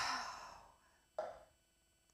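A woman sighing: one breathy exhale that fades over about half a second, then a short, fainter breath about a second later.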